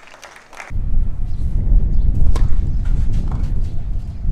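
Wind buffeting the microphone at an outdoor tennis court: a loud, uneven low rumble that starts abruptly under a second in, with a single sharp tap near the middle.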